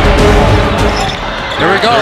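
Music gives way about a second in to game sound: a basketball being dribbled on a hardwood court, with an announcer's excited voice rising near the end.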